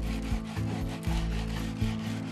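Hand tool scraping and rubbing on a small piece of wood being carved into a toy horse, in repeated short strokes, over soft background music.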